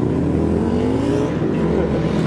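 A road vehicle's engine accelerating, its pitch rising over about a second and a half, over a steady rumble of passing traffic.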